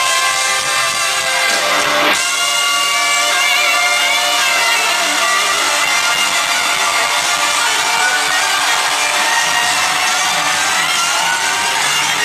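Amplified electric guitar played live, with long held notes that bend up and down in pitch. A sharp hit comes about two seconds in.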